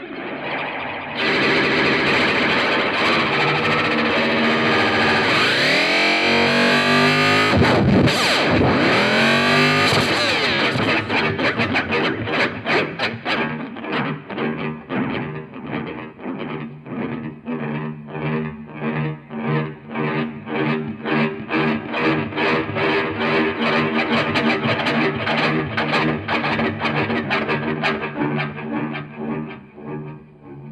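Electric guitar played through distortion and effects pedals in free improvisation. A dense, loud distorted wash with swooping pitch glides gives way after about ten seconds to a fast, even stuttering pulse over sustained low notes.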